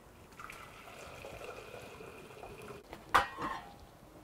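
Alder-leaf dye liquid poured in a steady stream from a stainless steel pot into an enamel saucepan for about two and a half seconds, then a single metal clunk as the pot is set down.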